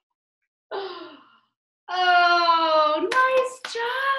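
A woman imitating a cat's meow with her voice: a short call about a second in, then long drawn-out meows from about halfway, sliding down in pitch.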